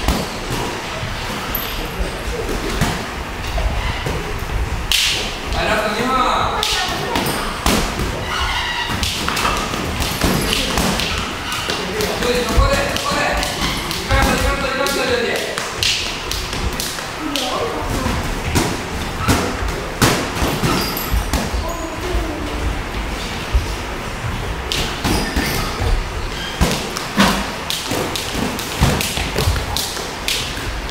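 Boxing gloves landing punches in sparring: many sharp thuds and slaps at irregular intervals, some in quick combinations, with a voice calling out in places.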